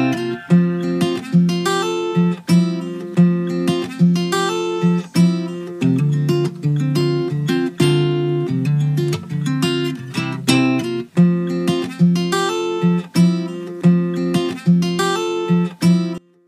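Background music: strummed acoustic guitar in a steady rhythm, with no singing.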